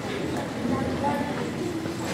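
Faint children's voices over a steady background noise.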